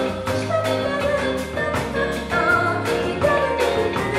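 Live band music: a woman singing lead into a microphone over electric guitars, bass guitar and a drum kit keeping a steady beat.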